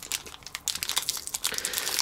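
Clear plastic packaging bag crinkling in the hands as it is pulled open, a run of irregular crackles that picks up about half a second in.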